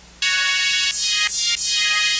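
Roland JP-8080 virtual-analog synthesizer playing a bright, high-pitched preset: a short run of sustained notes that comes in a fraction of a second in and changes pitch three times.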